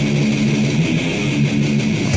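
Death metal recording: distorted electric guitars playing a riff of held chords that change every half second or so.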